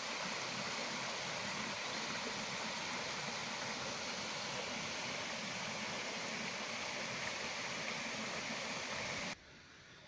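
Steady rushing of a small waterfall and rocky woodland stream, which stops suddenly about nine seconds in, leaving only faint background.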